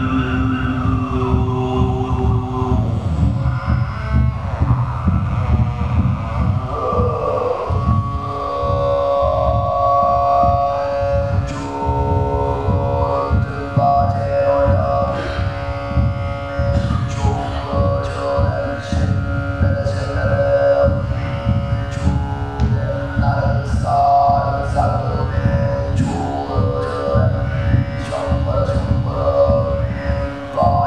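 Throat singing into a hand-held microphone: a low, pulsing vocal drone with whistling overtones picked out above it. The drone runs over an amplified heartbeat, and from about eleven seconds in a sharp click sounds regularly, a little more than once a second.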